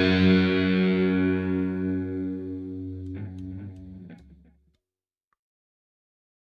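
The last chord of a heavy metal song on distorted electric guitar, ringing out and fading. A few faint clicks come as it dies away, and it is gone about four and a half seconds in.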